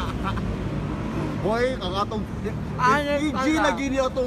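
A man talking over a steady low rumble of road traffic; the first second and a half is traffic alone before the speech starts.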